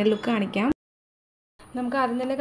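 A woman talking. Her voice breaks off for just under a second in the middle, where the sound cuts out completely, then carries on.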